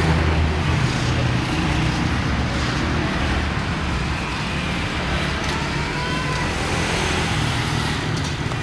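Suzuki Thunder motorcycle's single-cylinder four-stroke engine idling steadily through an aftermarket chrome exhaust, a low, even, pulsing note.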